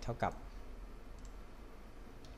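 A few faint computer mouse clicks.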